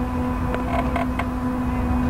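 Hang glider frame and basebar clicking and creaking four or so times in the first second as the glider is walked over grass. A steady low hum and a low rumble run underneath.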